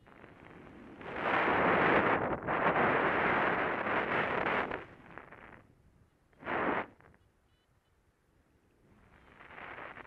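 Airflow of paraglider flight buffeting the camera's microphone: a long gust of rushing wind noise lasting about four seconds, a short blast in the middle, and another swell building near the end.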